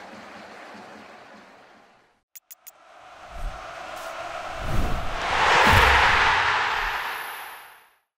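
Stadium crowd noise fading out over the first two seconds. Then a logo sting: three quick ticks, and a whooshing swell with a few low booms that builds to a peak about six seconds in and fades away.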